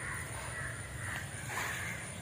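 Crows cawing, several calls in a row, over a steady low rumble.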